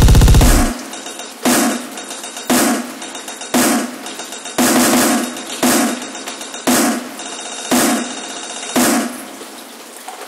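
End of a breakcore track: a dense, bass-heavy passage cuts off under a second in. It is followed by about eight single electronic drum hits, roughly one a second, each dying away, and then a fading hiss near the end.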